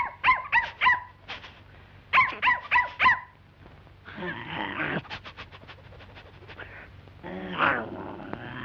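High-pitched cartoon dog yaps, voiced by a performer: two quick runs of four yaps about two seconds apart, then a rough growl and a run of quick clicks.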